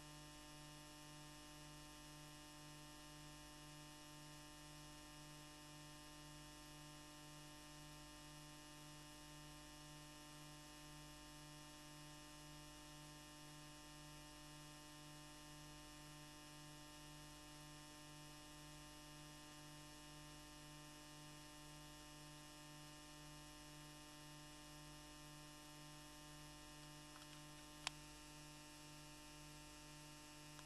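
Near silence with a faint, steady electrical hum made of several constant tones, and a single sharp click near the end.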